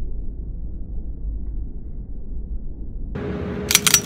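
A low muffled rumble. About three seconds in, a fuller steady background noise with a hum comes up, and near the end several sharp metallic clicks follow as the 9mm 1911 pistol is handled.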